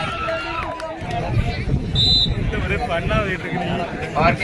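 Crowd of spectators around a kabaddi court, many men's voices talking and calling out over each other.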